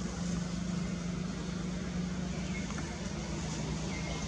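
A steady low engine-like hum runs under a noisy outdoor background, with a few faint short high chirps.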